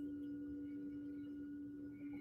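A faint, steady low drone tone with fainter higher overtones, easing off slightly, of the kind heard in singing-bowl-style background music.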